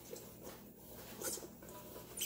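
Faint rustling and patting of paper towels pressed onto damp green beans in a stainless steel bowl, with a slightly louder rustle a little after a second in.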